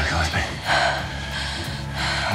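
Heavy breathing and gasps from a person, two breaths standing out, the stronger about two-thirds of a second in, over soft background music with low sustained notes.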